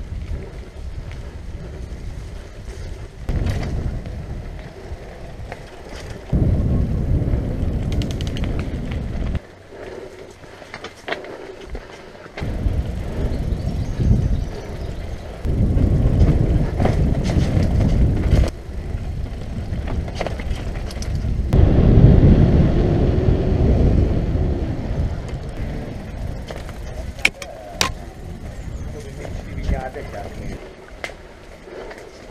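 Wind buffeting the microphone of a camera on a moving mountain bike, over tyre rumble on dirt trail and stone paths, rising and falling in surges, with occasional sharp rattles and clicks from the bike.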